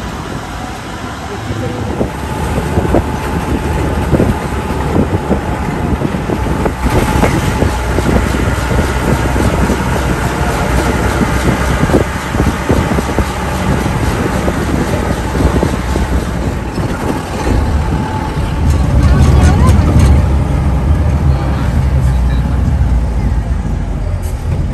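Jeep's engine and road noise from inside the moving vehicle, a steady rumble that grows deeper and louder for a few seconds near the end.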